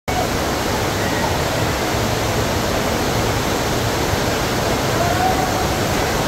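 Water rushing steadily over a FlowRider sheet-wave ride: a thin, fast sheet of pumped water pouring up the padded slope.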